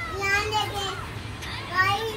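A young child's high-pitched voice, vocalizing in two short stretches, the second rising in pitch near the end, over a low steady hum.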